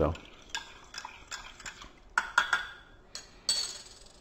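A spoon clinking against a coffee mug as the coffee is stirred: a run of light, irregular clinks, then one louder, ringing clink near the end.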